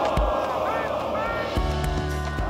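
A street crowd of football supporters shouting and cheering in celebration, many voices blending together. Music with a steady bass comes in underneath about one and a half seconds in.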